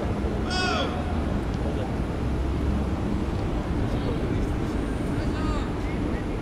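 Outdoor ambience: a steady low rumble with a short, high, arching cry about half a second in and a fainter one near the end.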